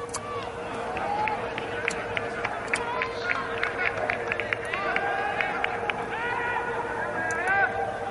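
Scattered shouting and calls from players and a few spectators across a largely empty football stadium, with sharp clicks dotted through it and a steady hum underneath.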